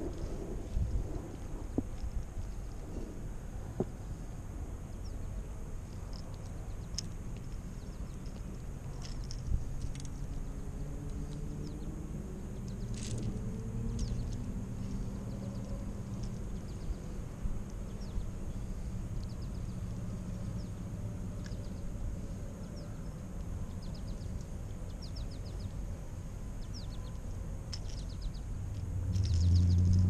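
Outdoor background of a low engine rumble whose pitch drifts slowly through the middle and swells near the end, with faint, scattered high bird chirps.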